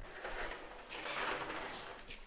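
A room window being pulled shut: a sliding rasp that lasts most of two seconds and is loudest about a second in.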